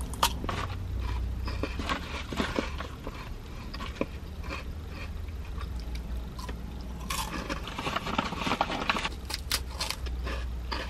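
Close crunching and chewing of a crisp mini waffle cone filled with peppermint dark chocolate, bitten into again and again, with a sharp crunch just after the start and a denser run of crunching near the end.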